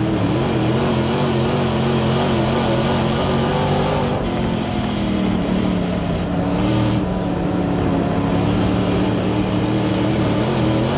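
Crate late model dirt race car's V8 engine running on track, heard loud from inside the cockpit. Its pitch wavers up and down, dips a little about five seconds in, then steadies.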